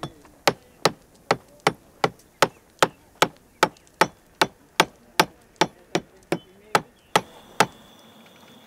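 Hammer blows on the masonry of a tiled grave tomb, a steady, evenly paced run of sharp strikes at about two and a half a second, chipping into the tomb's wall; they stop shortly before the end.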